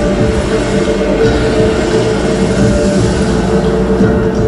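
Show soundtrack music: sustained held tones over a dense, steady low rumble.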